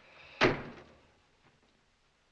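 A door slammed shut once, about half a second in, with a short ringing decay after the bang.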